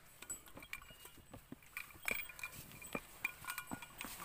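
Faint, scattered clicks and knocks of hikers shifting their backpacks and gear and stepping about on a rocky trail.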